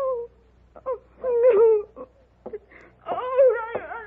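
A woman crying out and sobbing in broken, wavering wails, loudest in the middle and near the end, in grief and shock.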